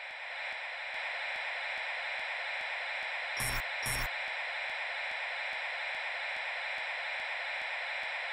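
Steady electronic static hiss, with faint regular ticking at nearly four a second and two sharp clicks about three and a half and four seconds in.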